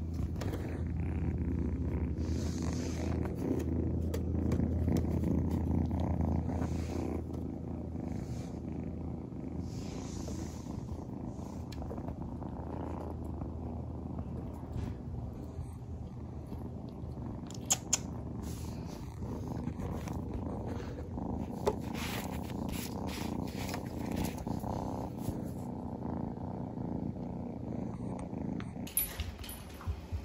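Kitten purring steadily close to the microphone, loudest over the first several seconds, with a few light clicks later on.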